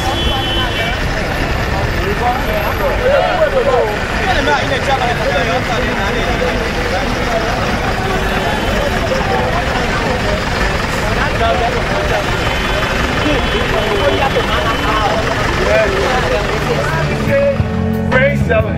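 A crowd of many people talking over each other, with a low steady rumble beneath the voices.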